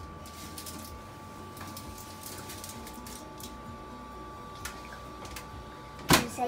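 Faint steady hum with a few scattered light clicks and knocks as a countertop oven is handled and its control panel pressed.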